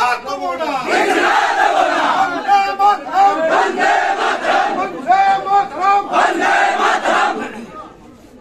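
A large crowd of protesters shouting together, many voices overlapping in a loud, continuous din that eases off near the end.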